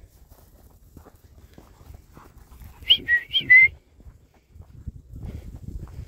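A handler's whistle: three short, high notes in quick succession about halfway through, each gliding in pitch. It is a cue to keep young bird dogs moving forward.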